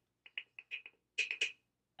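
A plastic container of powdered sugar being tapped and shaken over a measuring spoon: a run of about eight light taps, the last three louder.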